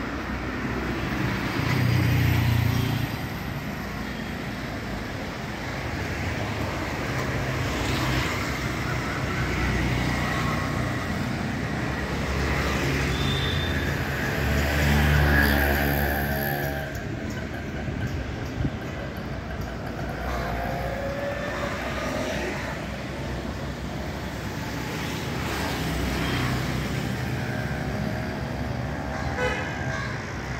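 Traffic on a busy city road: motorbikes and cars passing, with a vehicle horn sounding about halfway through, the loudest moment.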